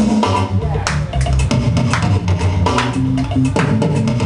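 Steel pans played live as a melody over accompaniment of drum kit and bass guitar, in a steady reggae-style groove.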